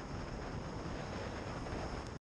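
Low, steady wind and road noise from a motorcycle riding on a rain-soaked road, picked up by a helmet camera with wind on the microphone.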